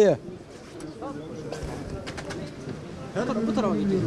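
Quiet street background with faint distant voices and a bird calling, until a man's voice comes in about three seconds in.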